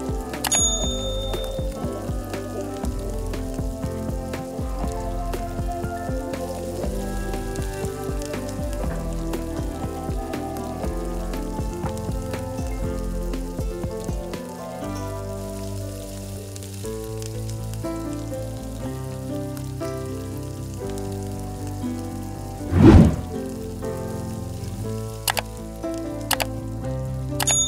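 Potato sticks deep-frying in hot oil, a steady sizzle with fine crackles, under background music. A single loud thump comes near the end.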